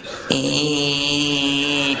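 A man's voice holding one steady, buzzing drone with a hiss over it, starting a moment in: a vocal imitation of a small propeller plane's engine at full power on its takeoff run.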